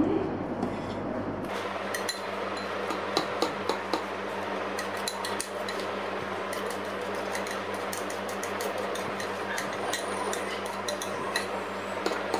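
Long metal spoon clinking and scraping against a stainless steel pot as cooked mung beans are stirred into thickened starch liquid: repeated light clinks over a steady background hum.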